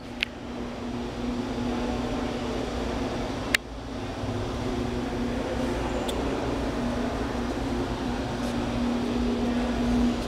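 A steady mechanical hum with a low droning tone, broken by two sharp clicks: one just after the start and one about three and a half seconds in.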